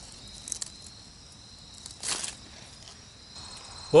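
Insects in the surrounding vegetation making a steady high-pitched trill. A brief rustle comes about two seconds in.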